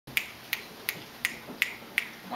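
Six sharp, evenly spaced finger snaps, nearly three a second, counting off the tempo before the saxophone and piano come in.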